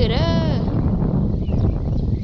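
A drawn-out spoken word with a rising-then-falling pitch lasting about half a second, followed by a loud, uneven low rumble of wind buffeting the microphone.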